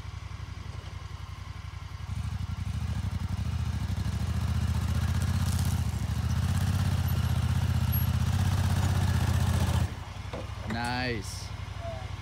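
2018 Honda Pioneer 1000 side-by-side's parallel-twin engine running at low speed on a rough trail, a low steady rumble that grows louder from about two seconds in and drops back abruptly near the end. A voice speaks briefly just after the drop.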